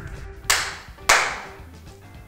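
Two sharp claps about half a second apart, the second louder, each with a short ringing tail, over faint background music.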